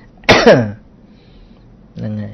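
A man clearing his throat once: a short, loud vocal sound falling in pitch, about half a second long, shortly after the start.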